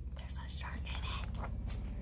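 Soft, breathy voice sounds and the rustle of a hardback picture-book page being turned.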